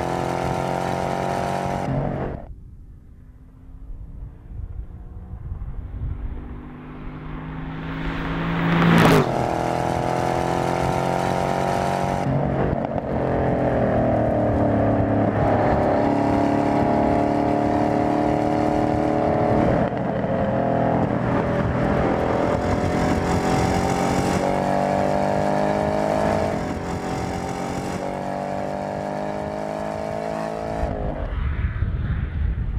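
Chevrolet Camaro Z/28's V8 exhaust under hard acceleration, its note rising through the gears with a drop at each upshift. Early on it cuts off, comes back quieter and swells to a loud peak as the car flies past about nine seconds in.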